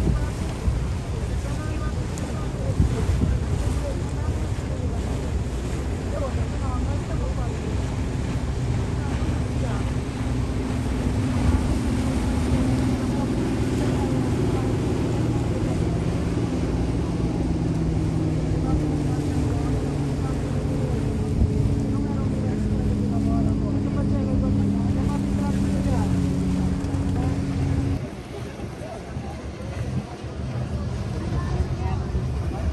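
Wind buffeting the microphone over the running engine and water noise of a lake passenger ferry. From about halfway through, a steady engine drone with several pitched tones comes up, then stops suddenly near the end.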